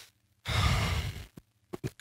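A man's audible breath into a handheld microphone: one sigh-like exhale lasting about a second, starting about half a second in, followed by a few small mouth clicks just before he speaks.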